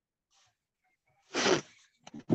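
A single short, breathy vocal burst from a person, about one and a half seconds in, after near silence.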